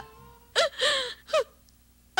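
A woman gasping and sobbing while crying: three short, breathy catches of voice in quick succession about half a second in.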